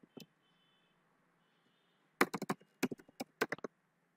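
Computer keyboard keystrokes: a single key press near the start, then a quick run of about ten clicks from about two seconds in.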